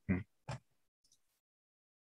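A man's short "hmm", followed by a brief click about half a second in, then near silence.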